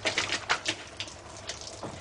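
Splashing water with a quick, irregular run of knocks and scrapes as a soaked man clambers up out of a flooded tunnel; the knocks are thickest at first and die away after about a second and a half.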